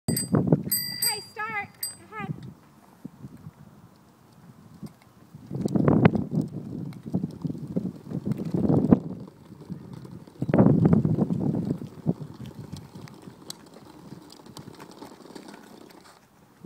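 A few short, bright rings in the first two seconds, like a bicycle bell, as a child's bicycle is ridden, followed by three bursts of low rushing noise.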